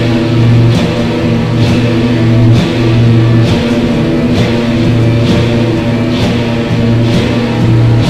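Live rock band playing a loud, slow guitar passage: long held low notes with a crash about once a second.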